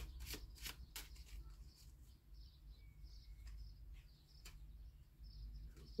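Faint shuffling and flicking of a deck of animal oracle cards, a quick run of soft clicks that dies away about a second in. After that it is near silence, with two or three lone taps of cards being laid down.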